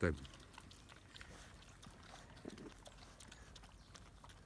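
Mangalica-type pigs eating grain meal off the ground: faint, irregular clicks of chewing.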